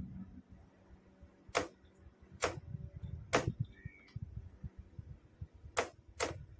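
Sharp single clicks of the hand-operated key switching a Morse signalling lamp on and off: three clicks about a second apart, then a longer pause before a fourth near the end.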